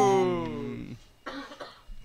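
A man's drawn-out 'ooh' of approval, one long note sliding down in pitch and fading out within the first second, then a faint short noise about halfway through.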